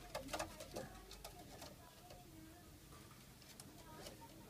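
A Pakistani pigeon cooing softly, with a few sharp clicks in the first second and a half.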